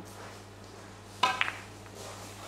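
Snooker cue tip striking the cue ball: one sharp click with a brief ring about a second in, followed quickly by a softer second click.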